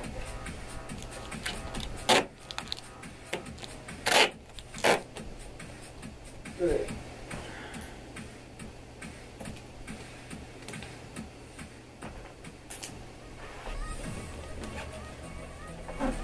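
Tape being pulled off the roll in four short tearing rips, amid small clicks and rustling as it is pressed onto the bass drum to hold a muffling pillow against the head.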